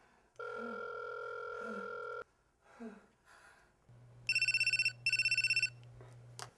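A telephone call going through: a steady ringback tone sounds for about two seconds, then after a pause a phone's electronic ringer trills in two short bursts near the end.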